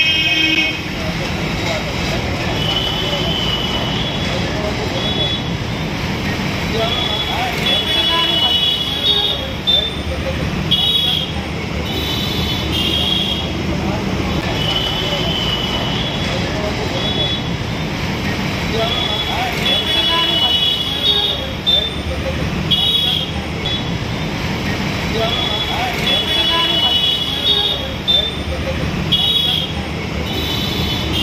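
Busy city street traffic noise, with vehicle horns tooting in many short blasts every few seconds over the steady hum of passing traffic.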